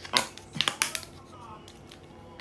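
Screw cap of a plastic spouted jelly-drink pouch being twisted open, with a handful of sharp clicks and crinkles of the pouch in the first second.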